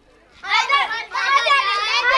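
Several girls' voices chattering over one another, high-pitched, starting about half a second in.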